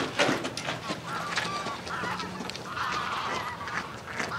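Wild geese honking, a run of short overlapping calls, with a few sharp clicks near the start.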